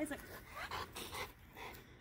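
Golden retriever panting, quick breaths about four a second.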